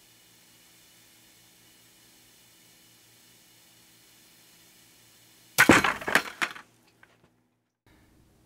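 Balsa-wood model tower breaking under its test load: a sudden loud crack about five and a half seconds in, followed by about a second of rattling clatter as it collapses along with its steel load chain. The failure begins with a lower diagonal cross member buckling, at a load of about 10.5 kg.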